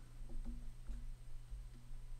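Quiet room tone with a steady low electrical hum.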